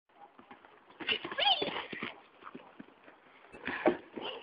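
Hoofbeats of a horse in a riding arena, with people's voices over them, loudest about a second in and again near the end.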